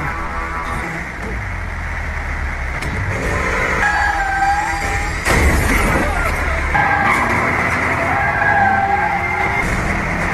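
Action-film soundtrack: dramatic score music mixed with heavy vehicle engine noise from a bus and truck, with a sudden loud impact about five seconds in.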